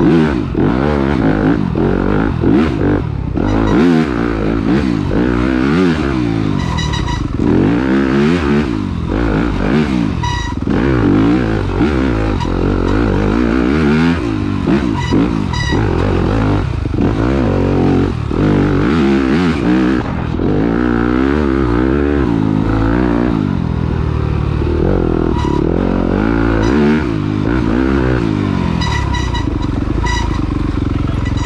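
Yamaha YZ250F's single-cylinder four-stroke engine revving up and down without pause as the throttle is worked through rough trail, with frequent knocks and clatter from the bike over the ground.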